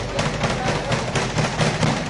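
Speed bag punched in a fast, even rhythm, the bag knocking against its wall-mounted rebound platform about six or seven times a second.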